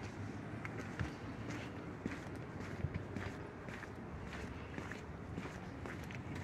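Footsteps walking on pavement, about one or two steps a second, over the steady low hum of the car's electric fuel pump running.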